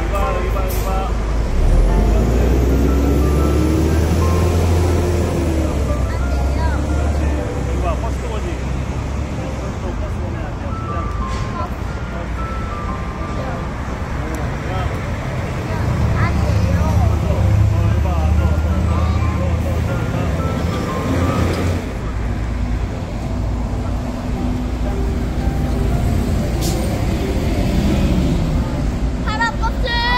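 City road traffic with heavy vehicles passing close by. A bus engine rumble swells a couple of seconds in with a rising engine note as it pulls away, and a second swell of vehicle rumble comes around the middle.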